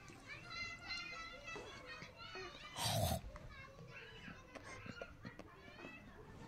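Children's high-pitched voices talking and calling, with one brief loud burst of noise about three seconds in.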